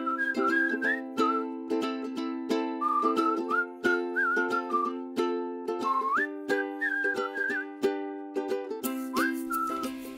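Intro theme music: a whistled melody with little upward slides, over strummed string chords keeping a steady beat.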